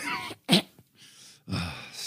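A man's brief laugh, with one sharp burst of breath about half a second in, then a short quiet gap and a breath near the end.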